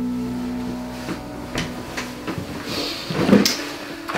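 A few light knocks and footsteps while a wooden picture frame is taken off a shelf and carried. About three seconds in comes a louder scrape and rustle as a person sits down on a wooden chair. Soft background music with held notes plays underneath.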